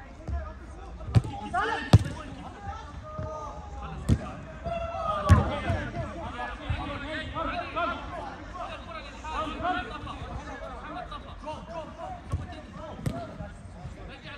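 Sharp thuds of a football being struck on an artificial pitch, about five in all, the loudest about two seconds in, over players shouting and calling.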